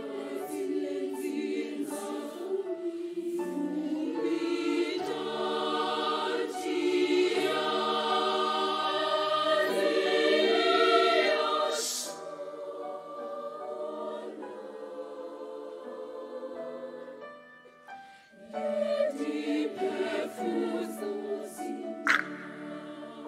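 Children's mixed choir of primary-school age singing an African choral song, swelling to a loud climax about halfway through, then dropping to a softer passage. Near the end it dips to a brief hush before the voices come back in strongly.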